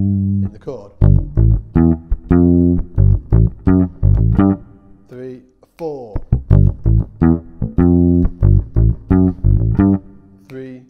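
Fender electric bass played fingerstyle, a rock riff over A minor in two runs of plucked notes with a short break about five seconds in.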